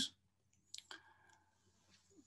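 Near silence, with a couple of faint short clicks just under a second in.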